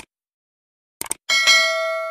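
Subscribe-button animation sound effect: a mouse click at the start, two quick clicks about a second in, then a bright bell ding that rings on.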